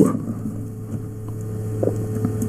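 A steady low hum with a faint, higher steady tone above it, under a quiet background hiss.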